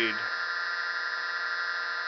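Reed-switched pulse motor running steadily with its rotor spinning: the drive coil, pulsed through the reed switch, gives a steady buzzing hum made of many high tones.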